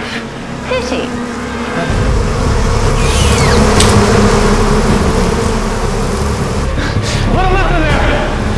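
Film sound effects: a loud low rumble with dense rushing noise sets in about two seconds in, with shrill gliding cries over it and voice-like cries again near the end.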